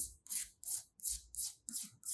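Chalk scratching on a chalkboard in quick short hatching strokes, about three strokes a second, as a region of a graph is shaded in.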